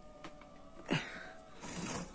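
Metal handling noises from a kerosene hurricane lantern as its glass globe is worked up against a part that has stuck: a sharp knock about a second in, then a short scraping noise near the end.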